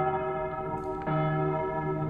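A bell rings, struck again about a second in, each stroke ringing on with a long steady decay.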